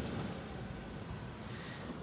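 Quiet, steady background hum and hiss with no distinct sounds.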